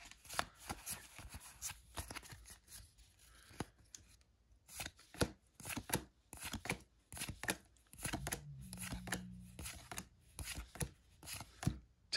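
Pokémon trading cards being flipped through by hand, each card slid off the stack with a light snap, making an irregular series of sharp clicks.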